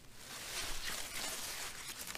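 Cucumber vines and leaves rustling quietly as hands search through them and pick pickling cucumbers.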